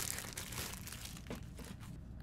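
Faint crinkling of a clear plastic bag as it is handled and pulled off a rugged phone case.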